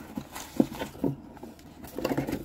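Hands handling an open cardboard mailer box: a few short knocks and scuffs of fingers and flaps against the cardboard, the sharpest a little over half a second in.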